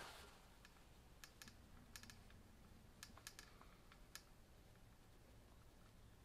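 Near silence broken by a scattering of faint, sharp clicks over the first four seconds, from a caulking gun as it pushes a bead of silicone into a tail light's lens seam.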